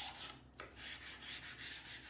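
Chalk pastel held on its side and scrubbed back and forth across paper in quick strokes: a soft, dry scratching as a large area is coloured in.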